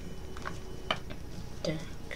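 A few light clicks and taps of a food package being handled on a table, with a brief voiced sound near the end, over a low steady hum.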